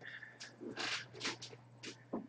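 A dog in the room making a handful of short, faint sounds, one after another.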